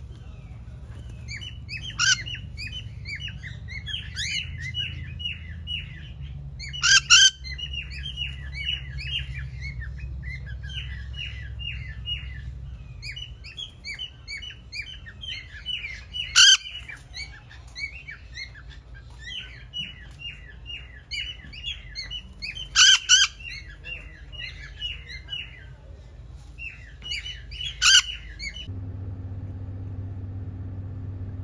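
A flock of parrots chattering continuously, with a loud harsh squawk every few seconds. The calls stop shortly before the end, giving way to a steady low hum.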